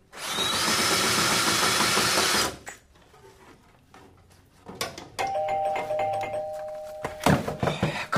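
A cordless drill/driver runs for about two and a half seconds, driving a screw through a metal shelf bracket into wood, its whine stepping up in pitch as it gets going. About five seconds in, a doorbell sounds two steady tones held for about two seconds, followed by a few sharp knocks.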